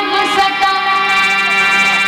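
Female vocalist singing live into a microphone over instrumental accompaniment, holding a long steady note that glides up into it at the start.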